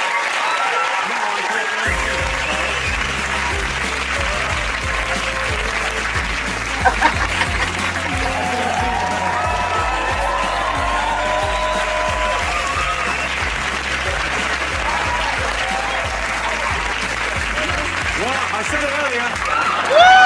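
Studio audience applauding and cheering. About two seconds in, music with a steady bass line starts under the applause, and voices come through over it.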